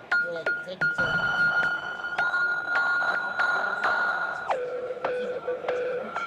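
Modbap Trinity 2.0 Eurorack drum module playing its ORB modal-synthesis voice: repeated struck, resonant pitched hits, roughly two a second, each ringing on as a held high tone. About four and a half seconds in, the ringing drops to a lower pitch.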